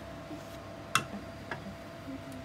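A sharp, hard click about a second in and a fainter one about half a second later, over a steady low hum.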